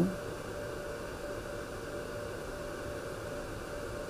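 Steady background hiss and room tone with a faint constant hum; no other events.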